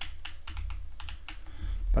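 Irregular run of small clicks from the rear Quick Control Dial of a Canon EOS 5D Mark III being turned through its detents to step the aperture, with a low rumble of the camera body being handled near the end.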